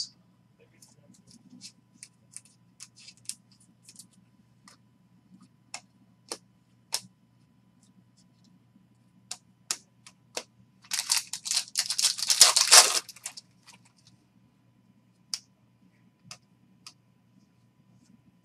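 Topps Chrome baseball cards being flipped through by hand: scattered light clicks and snaps of card edges, with a denser, louder stretch of cards sliding against one another a little past the middle.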